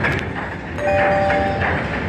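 Steady casino-floor din with electronic game sounds from a Mighty Cash Xtra Reel slot machine as its bonus reels spin; about a second in, a steady two-note electronic tone is held for almost a second.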